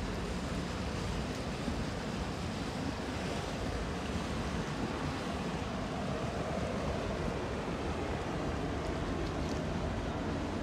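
Canal water lapping and splashing against the quay and mooring poles, over the steady hum of motorboat engines out on the water. In the second half a motor water taxi passes close by and its engine comes up louder.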